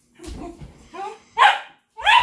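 Dog barking: a few softer calls lead up to a loud bark about one and a half seconds in, with another loud bark starting right at the end.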